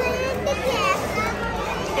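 Speech: people talking, with a child's high voice among them.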